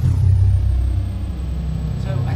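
Deep, steady bass rumble sound effect lasting nearly three seconds, with a thin high tone that drops sharply at the start and then holds: an intro title sting.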